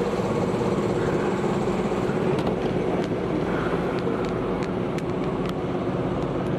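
Sailing yacht's inboard engine running steadily under way, a constant hum, with a few faint clicks.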